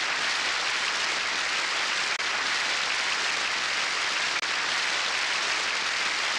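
Studio audience applause, a dense and steady clapping with a brief break near the middle, as if edited.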